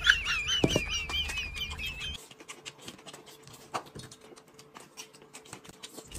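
A high, warbling squeak for about two seconds over a low background bed; both cut off suddenly. A crisp crunch comes near the start, then faint crunching clicks of raw cucumber being bitten and chewed.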